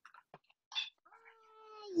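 A faint, drawn-out high-pitched call, held on one pitch for most of a second and then dropping, heard over a video-call microphone.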